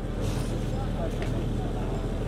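A steady low hum under faint background noise and distant voices.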